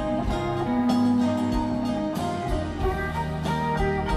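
Live band playing an instrumental passage with guitars to the fore and long held notes, no vocals.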